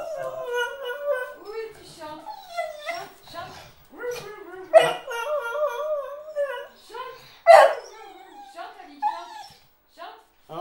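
Small beagle howling and whining in long wavering, sing-song notes, with two louder sharp cries about five and seven and a half seconds in: her excited 'singing' at the prospect of a walk.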